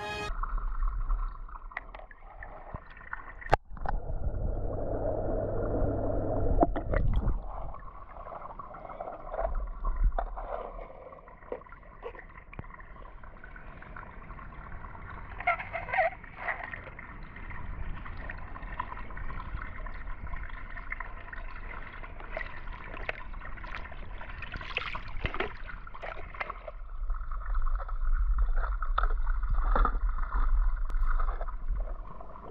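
Pool water gurgling and trickling at the edge, with scattered knocks of plastic toy cars being handled and set down on wet stone, one sharp click about three and a half seconds in. Low rumbles come and go at times.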